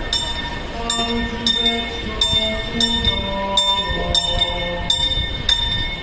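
Church bell ringing in regular strikes, about three every two seconds, each with a bright ringing tail. Under it, a slow funeral hymn melody moves in long held notes.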